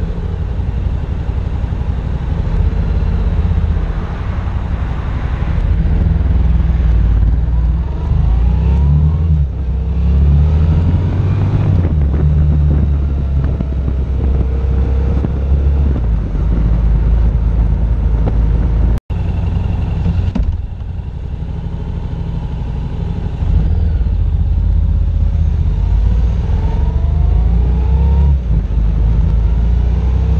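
Yamaha FZ-07's parallel-twin engine under way, pulling up in pitch through several accelerations, over heavy low wind rumble on the microphone. There is a brief gap in the sound about two-thirds of the way through, followed by a few quieter seconds before it picks up again.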